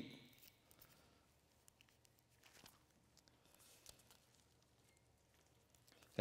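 Near silence: room tone with a few faint rustles and ticks of Bible pages being turned.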